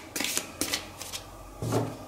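A deck of tarot cards being shuffled by hand: a few quick, papery strokes in the first second, then a louder short sound near the end.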